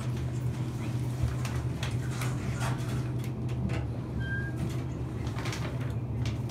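Steady low hum inside a ThyssenKrupp traction elevator car as it sets off upward, with scattered light clicks and knocks.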